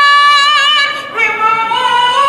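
A woman singing unaccompanied through a handheld megaphone, holding one long note, breaking briefly about a second in, then rising into another held note.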